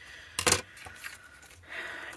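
Metal craft scissors set down on the desk's cutting mat with one sharp clack about half a second in, followed by faint rustling of card stock being handled.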